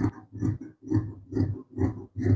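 Large tailoring scissors snipping through brocade blouse fabric on a wooden table: a steady run of crunchy cuts, about two a second, as the blades work along the marked line.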